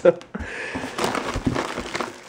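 A hand rummaging in a grocery box: a plastic bread bag crinkling and packages rustling against cardboard, in a rough, continuous scuffle with small clicks.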